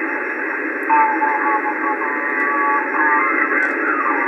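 Single-sideband amateur radio voice received on the 21 MHz band through a software-defined receiver. The sound is a thin, narrow band of steady static hiss, and a faint voice comes through it about a second in and again near three seconds.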